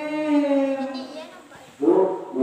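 Quran recitation (tilawah): a single voice holds a long melodic note that tapers off about a second in. Near the end a group of voices comes in together, loudly.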